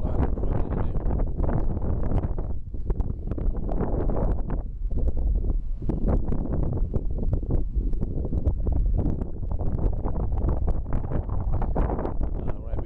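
Wind buffeting the microphone: a loud, continuous low rumble that surges and dips with the gusts.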